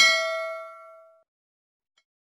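A bell 'ding' sound effect, struck at the start and ringing out with several clear tones, fading away by just over a second in.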